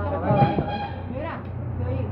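People talking in the background over a steady low hum.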